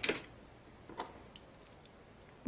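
A few faint, light clicks of a small toy car being set down into a plastic display-case slot, the clearest about a second in.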